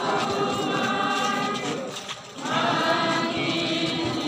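Many voices singing a hymn together in long, held phrases, breaking off briefly about two seconds in and then going on.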